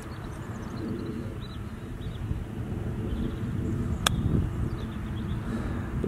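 A golf iron strikes the ball on a short pitch shot: one sharp click about four seconds in, over a steady low outdoor rumble.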